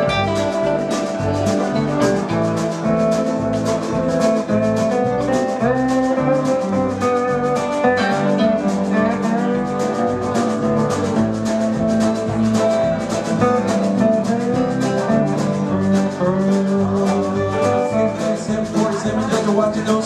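Live country string band playing an instrumental break: mandolin, lap steel guitar, guitar and electric bass over drums keeping a steady beat, with a few sliding notes around a third of the way through.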